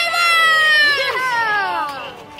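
Several children yelling together in long, high shouts that slide down in pitch, overlapping one another.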